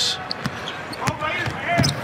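Basketball dribbled on a hardwood court: a few separate bounces, roughly one every 0.7 seconds.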